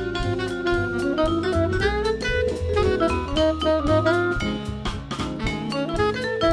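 Jazz combo playing: tenor saxophone and vibraphone together over bass and drums, with a ride of cymbal strokes and a steady bass line underneath.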